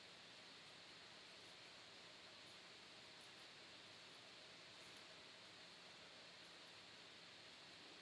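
Near silence: room tone with a steady faint hiss.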